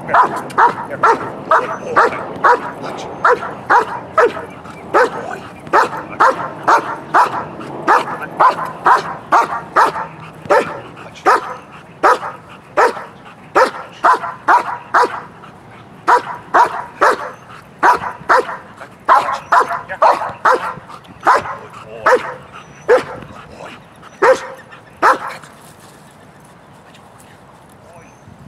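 A large black shepherd-type dog barking over and over, about two to three barks a second with a few short breaks, in high drive for a ball on the ground that it is being made to hold back from; the barking stops about three seconds before the end.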